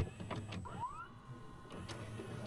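VHS video recorder loading a cassette: the tape-threading mechanism whirs and clicks, with a short rising motor whine just before halfway.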